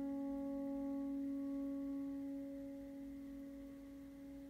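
Prepared grand piano tone left ringing and slowly fading, a bell-like sustained pitch with its higher overtones dying away about two seconds in.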